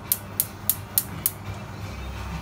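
Gas hob spark igniter clicking, about three sharp ticks a second, then stopping about a second and a half in as the burner catches.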